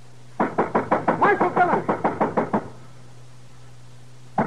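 Radio-drama sound effect of urgent pounding on a wooden door: a rapid run of knocks lasting about two seconds, starting about half a second in, over a low steady hum.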